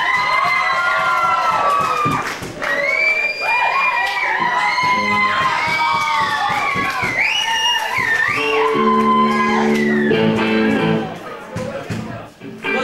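Live audience cheering, whooping and whistling in a hall, with a few steady electric guitar notes held for a couple of seconds near the end.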